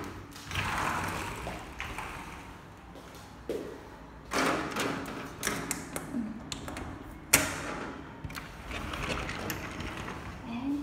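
Handling noise: scattered clicks and knocks with rustling between them, and one sharp click about seven seconds in.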